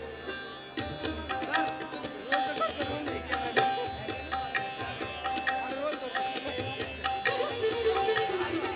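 Live Indian classical instrumental music: a plucked string instrument plays quick strokes and sliding notes, with low hand-drum strokes underneath.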